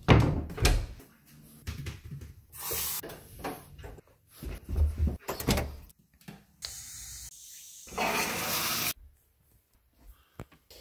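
A quick run of household handling sounds: thumps, clicks and door-like knocks. They are followed by a faint steady hum and then about a second of rushing noise that cuts off suddenly near the end.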